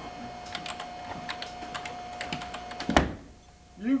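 Irregular clicking of typing on a computer keyboard over a faint steady whine, ended by a single thump about three seconds in.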